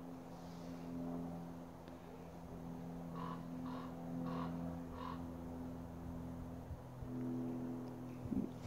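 Quiet background with a faint steady hum, and a distant animal calling four times in quick succession, evenly spaced a little over half a second apart, around the middle.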